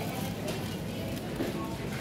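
Supermarket background sound: a steady low hum under faint voices.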